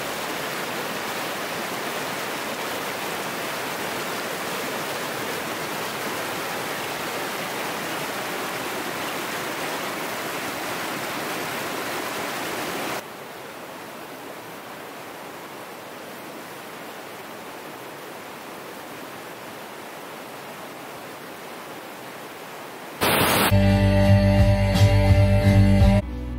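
Creek water rushing over rocks, a steady rush that steps down to a quieter level about halfway through. Guitar music comes in about a second before the end.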